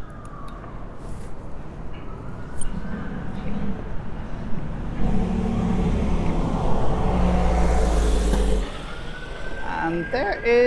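A fire engine siren wails in slow rising and falling sweeps over road traffic, growing stronger near the end. A heavy vehicle's engine rumbles loudly past from about halfway in, then drops away shortly before the end.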